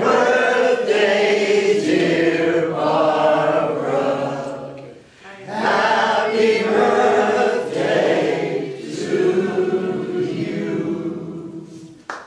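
Unaccompanied singing in long held phrases, with a short break for breath about five seconds in and a fade near the end.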